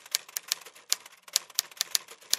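Typewriter keystroke sound effect: an irregular run of sharp clicks, several a second.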